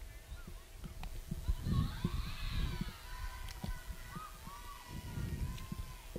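Distant voices of softball players and spectators calling out and chattering, with a brief burst of group voices about two seconds in, over a low steady rumble.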